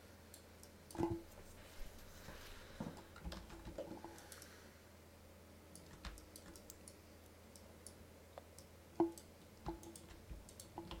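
Irregular clicks of a computer mouse and keyboard, with two louder ones about a second in and near the end, over a faint steady low hum.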